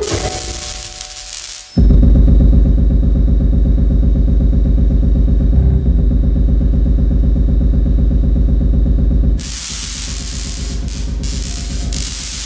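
Live electronic music from a laptop set-up: hiss-like noise, then about two seconds in a loud, deep drone that pulses rapidly. The drone cuts off suddenly after about seven seconds and gives way to static-like noise.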